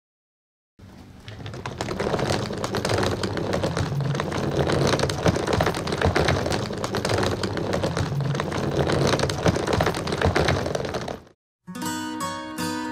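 Hard-shell suitcase's plastic wheels rolling over rough stone paving, a continuous fast clattering rattle that starts about a second in and cuts off suddenly near the end. Acoustic guitar music begins just after it stops.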